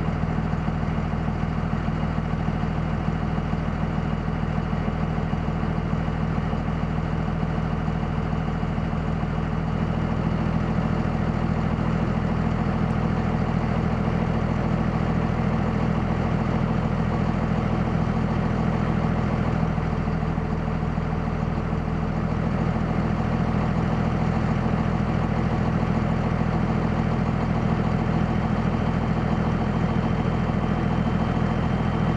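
2001 Dodge Ram's 5.9-litre Cummins inline-six turbo diesel idling steadily at warm idle, just under 1000 rpm, with no sign of a miss.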